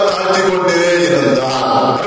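A man singing a slow, chant-like melody into a handheld microphone, holding long notes; his pitch slides down about a second in and rises again near the end.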